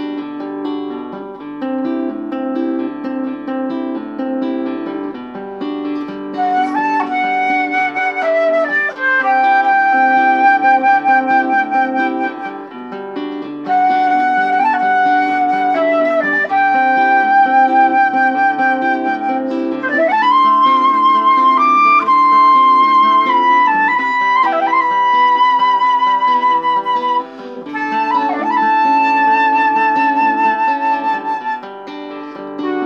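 A vertical flute playing a slow melody of long held notes with vibrato, scooping up into some of them, over a recorded guitar accompaniment of chords. The guitar plays alone for about the first six seconds before the flute comes in.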